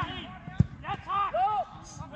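A football struck hard in a shot at goal, one sharp thump about half a second in, followed by raised voices calling out.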